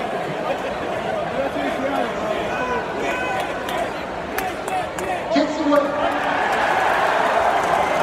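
Large stadium crowd of football fans, many voices chattering and shouting at once, the noise swelling over the last few seconds as a field goal is made.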